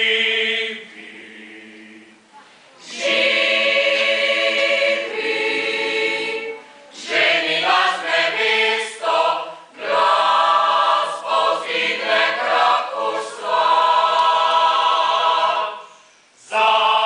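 Mixed choir of men's and women's voices singing unaccompanied in parts. It sings in phrases: a held chord, a quieter passage, then full sustained chords, a run of short detached notes in the middle, and more sustained chords that break off near the end.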